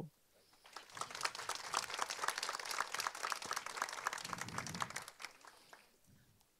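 Audience applauding, starting about a second in and fading out near the end.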